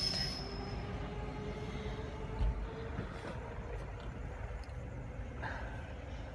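A train running at a railway station, heard from inside a parked car: a steady low rumble with a faint whine that rises slowly over the first few seconds, and a brief low thump about halfway through.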